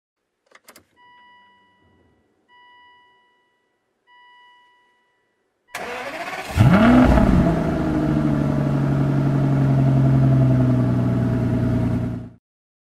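A couple of clicks and three evenly spaced electronic chimes from the car. Then the 2005 Aston Martin DB9's V12 is cranked on the push-button start and catches about six and a half seconds in. It flares up in revs and drops back, settling into a steady idle.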